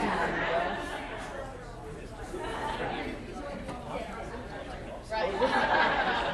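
Several people chatting in a large, echoing room, overlapping voices with no one voice standing out, growing louder about five seconds in.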